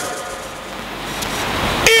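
A sustained keyboard chord of several steady tones held under a pause in the preaching, with a low rumble swelling up shortly before the end.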